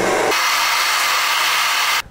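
Handheld hair dryer running: a steady rush of blown air over a faint low motor hum. It starts abruptly, its hiss brightens about a third of a second in, and it cuts off suddenly at the end.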